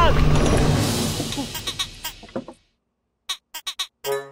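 The end of a man's long shout, then a low rumble that fades away over about two and a half seconds. After a moment of silence come a few quick clicks.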